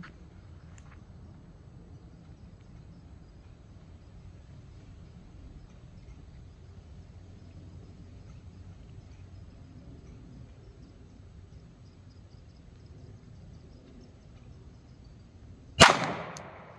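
Faint steady background noise while the pistol is held on target, then a single Glock 17 9mm pistol shot near the end, firing a DoubleTap 115-grain +P solid copper hollow point, with a short ringing tail.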